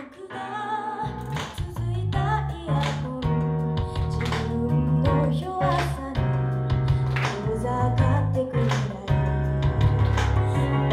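A woman singing a Japanese pop song live into a microphone, with an accompaniment of bass, drums and guitar; the bass and drums come in strongly about a second in.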